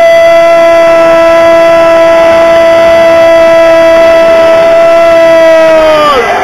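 A horn, most likely a fan's air horn, blown and held on one steady note for about six seconds. Its pitch sags as it cuts off near the end.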